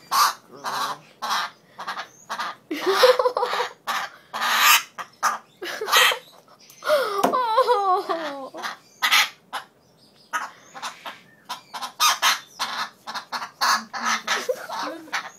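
African grey parrot squawking over and over while restrained in a towel: short harsh screeches one or two a second, with a longer wavering call that falls in pitch about halfway through.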